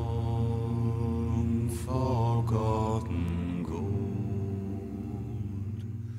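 A chorus of deep male voices singing a slow, solemn melody with long held notes.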